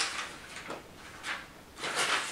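About five short, soft rustles, as of paper being handled.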